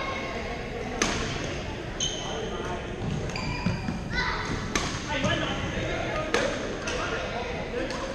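Badminton rackets striking the shuttlecock several times at irregular intervals, with sharp cracks ringing in a large echoing hall. Short squeaks of court shoes on the sports floor are heard among the strikes.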